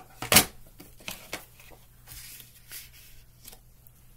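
Sheets of scrapbook cardstock being handled and laid down, rustling softly. A sharp click about a third of a second in is the loudest sound, followed by a few lighter taps.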